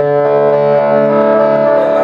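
Cort semi-hollow electric guitar played through effects pedals and an amplifier: one chord is struck at the start and left to ring. The sound is full and bass-heavy.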